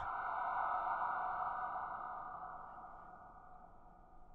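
A ringing tone made of several close pitches, used as a title sting, holding and then fading away over about three seconds.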